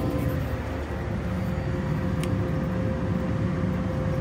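Self-propelled crop sprayer running while driving and spraying, heard from inside the cab: a steady engine and driveline rumble with a faint steady whine, and one short click a little over two seconds in.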